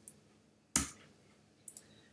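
One sharp computer keyboard keystroke about three quarters of a second in, the Enter key being struck, then a fainter light key tap near the end.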